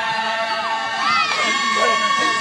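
A group of high voices singing or calling together in long held notes that slide up and down between pitches, over the noise of a crowd with children shouting.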